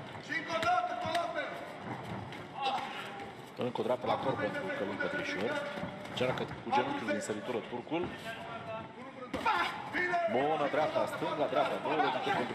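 Background voices calling out in the arena, with a few sharp thuds of kickboxing strikes landing.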